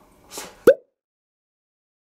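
A single short, sharp pop sound effect a little under a second in, rising quickly in pitch, edited in on the cut to a title card.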